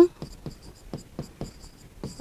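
A pen writing on a board: a run of light ticks and short scrapes, about five a second, as a word is written out stroke by stroke.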